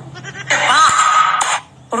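A single bleat, about a second long, wavering in pitch at first and then held.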